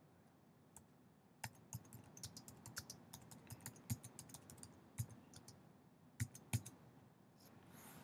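Faint keystrokes on a computer keyboard: a quick run of typing from about a second and a half in, ending with two louder taps.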